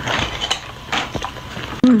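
Close-up chewing of a mouthful of soft meat tagine, with a few short wet mouth clicks and smacks, then a loud hummed "mmh" of enjoyment near the end.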